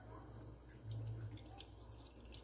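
Faint drips and small splashes of liquid as a hand lifts soaked onion skins out of a saucepan, over a low steady hum.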